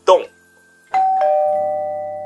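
A two-note ding-dong chime: a higher note about a second in, then a lower note a quarter second later, both ringing on and slowly fading. A brief bit of voice right at the start.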